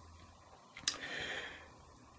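A single sharp click about a second in, followed by a brief soft hiss lasting under a second.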